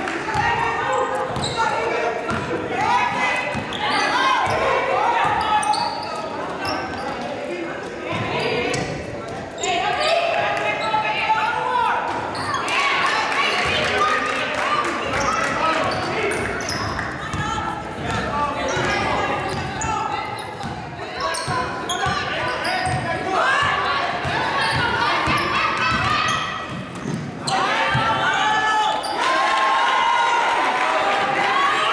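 A basketball dribbled and bouncing on a hardwood gym floor during live play, with players and spectators shouting and talking, all echoing around a large gym.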